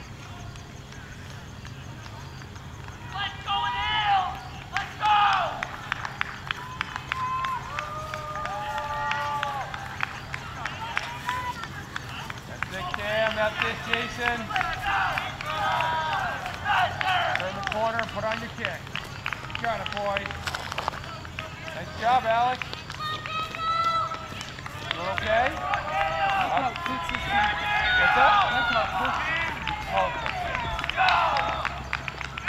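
Shouted voices calling encouragement to passing cross-country runners, coming in bursts from a few seconds in and busiest in the second half, over a steady low hum.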